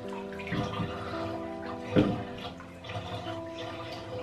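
Slow, relaxing music with held, bell-like tones playing from a small waterproof Bluetooth shower speaker, with water moving in a bathtub and a short sharp sound about two seconds in.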